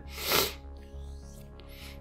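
A short, sharp breath close to the microphone, lasting about half a second, followed by faint steady tones.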